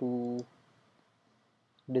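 Faint, short clicks of a computer pointing-device button, following a spoken word, in an otherwise quiet room.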